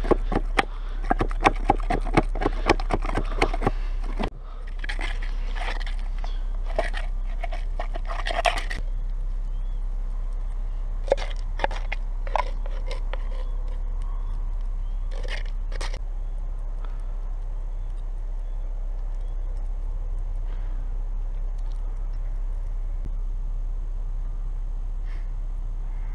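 A wooden pestle mashing crushed mouse and chokecherries in a tin can: a rapid run of wet, crunching strikes, then a second run after a short break. Later come a few scattered scrapes and taps as a stick works the mixture out of the can, over a steady low hum.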